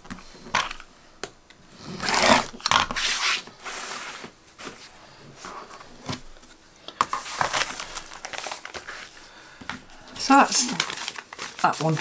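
Handling noise at a quilter's cutting mat: a few light clicks, then scratchy rustling as a long acrylic quilting ruler is slid and lifted off the mat and the paper-backed fabric strip is handled. The rustling comes in two stretches, the longer one about two seconds in.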